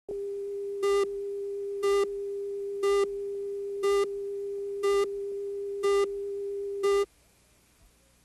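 TV station countdown tone: a steady electronic tone with a louder beep marking each second as the count runs down, seven beeps in all. It cuts off suddenly about seven seconds in.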